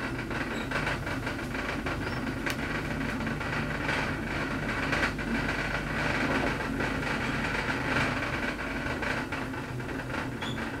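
KONE high-rise traction elevator car travelling upward at speed: a steady rumble and rush of air with a low hum, a little louder in the middle of the run. A single sharp tick sounds about two and a half seconds in.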